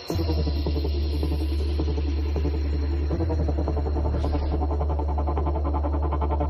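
Dramatic background score that cuts in suddenly and loudly: a heavy, steady low drone under a fast, pulsing electronic texture.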